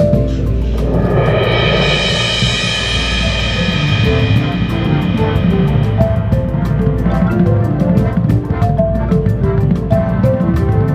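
Drum corps front ensemble music led by a rosewood-bar concert marimba. A loud swelling chord with a bright wash comes in about a second in over a sustained low bass, and the repeated marimba notes return about halfway through.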